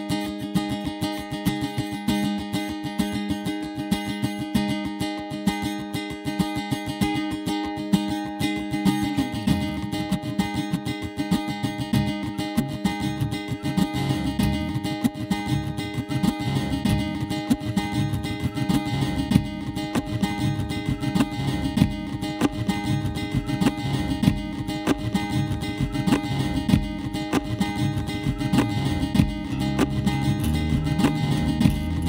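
Nylon-string electric-acoustic guitar played live through a looper pedal setup: a fast, even picked pattern, with a deeper, bassier layer coming in underneath about nine seconds in and building from there.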